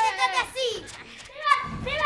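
Children shouting and cheering excitedly in high-pitched voices, with a short dull thump near the end.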